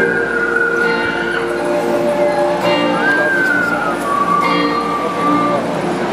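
A live band plays a slow, sustained low chord while a single high whistled melody, sent through a microphone, slides slowly: it holds, rises a little about three seconds in, then falls and holds lower.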